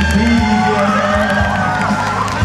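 A man sings into a microphone over amplified backing music, and the crowd cheers.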